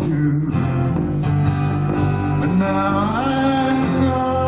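Live folk-country band playing: strummed guitars and bass under several male voices singing long held notes together, one voice sliding up into a higher note about three seconds in.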